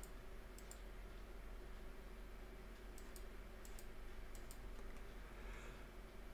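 Faint clicks at a computer, mostly in quick pairs, a handful of times, as a chart is scrolled. They sit over a low, steady room hum.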